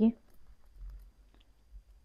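Faint handling of clothing: a few small, soft clicks and light fabric rustle as a garment is turned over in the hands.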